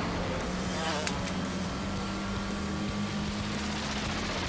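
Sound effect of small toy-like racing cars' motors: a steady buzzing drone at one pitch, with a short click about a second in.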